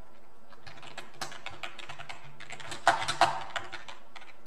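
Typing on a computer keyboard: a quick, uneven run of key clicks, with a couple of louder keystrokes about three seconds in.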